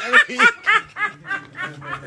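A person laughing in a run of short bursts, about three to four a second, fading toward the end.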